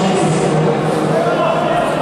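Men's voices talking and calling out over a low crowd murmur, with the echo of a large hall.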